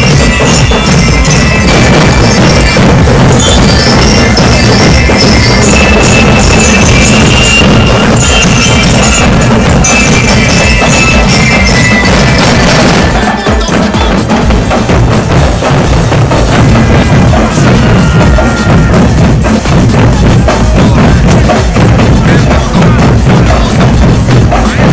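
Marching band playing loudly: bass and snare drums keep a dense beat under bright ringing bell lyres carrying the melody. About halfway through, the high bell tones thin out while the drums carry on.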